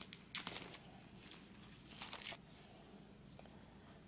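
Clear plastic wrapper being peeled and pulled off a pack of paper notebooks: faint crinkling and tearing rustles, a few about half a second in and again around two seconds in.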